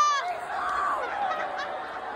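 Ballpark crowd yelling and cheering, with a loud high-pitched yell from one spectator cutting off just after the start, then a steady din of many voices.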